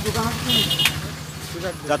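A motor vehicle engine running steadily close by, with a short, high-pitched horn beep about half a second in.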